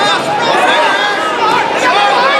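Crowd chatter: many spectators' voices talking and calling out at once, overlapping so that no single voice stands out.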